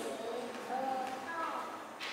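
A voice speaking quietly in short phrases.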